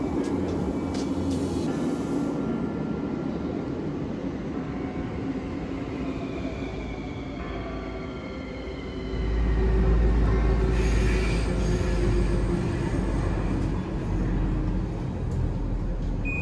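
Bucharest metro train pulling into the station, its motors whining down in pitch as it brakes to a stop. About nine seconds in, a much louder low rumble of the train running sets in, then eases off near the end.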